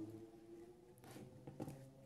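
Near silence: faint room tone with a low hum and a few faint ticks.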